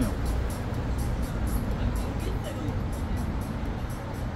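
Steady low rumble of a road vehicle, with music playing along in the background.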